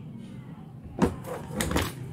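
A sharp click about a second in, then two or three quicker clicks and knocks near the end: small circuit boards and a plastic-cased module being handled and set down.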